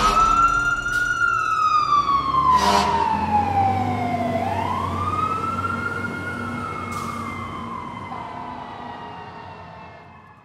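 Fire truck siren wailing, its pitch rising and falling slowly over about five-second cycles, over a low steady hum. It fades away over the second half.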